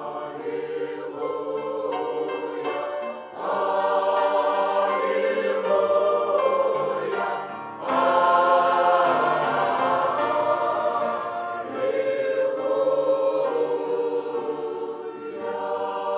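A large mixed choir of men and women singing a hymn in sustained chords. There are two brief breaks, about three and eight seconds in, and each is followed by a fuller, louder entry.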